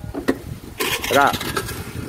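A vehicle engine runs with a low rumble. A couple of knocks come early, then a loud burst of noise about a second in with a brief shout-like call.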